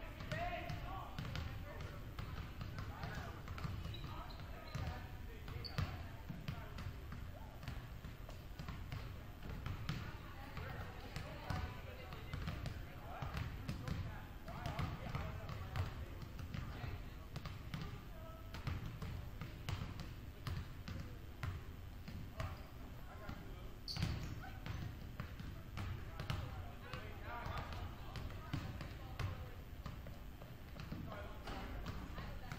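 Several basketballs bouncing on a hardwood gym floor, irregular thumps overlapping throughout, with indistinct voices of players in the background.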